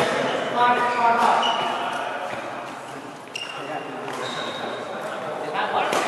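Sneakers squeaking in short high squeaks on a badminton court mat, with players' voices echoing in a large hall. A racket strikes a shuttlecock near the end.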